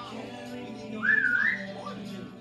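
Cartoon soundtrack playing from a TV: light background music with a short, wavering whistle that rises in pitch about a second in, the loudest thing here.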